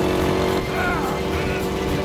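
Engines of antique motorcycles running steadily during a race, a continuous even drone.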